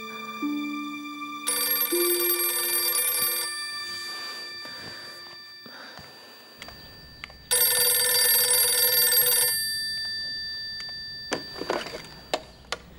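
Landline telephone bell ringing twice, each ring about two seconds long with a lingering ring-out, the rings about six seconds apart.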